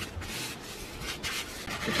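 Hands pressing and rubbing down on a folded cardstock card, making several uneven rubbing strokes.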